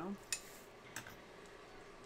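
Two small, sharp clicks, about a third of a second and a second in, from paper and craft tools being handled on a desk, over faint room noise.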